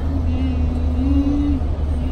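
Steady low rumble of a car engine and road noise heard from inside the cabin, with an engine hum that rises slightly in pitch about a second in.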